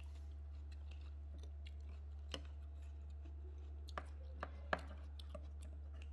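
A few faint, scattered clicks and taps of a metal fork picking up cut pineapple and knocking against the plastic fruit basket and sauce bowl, the sharpest about three-quarters of the way in, over a steady low hum.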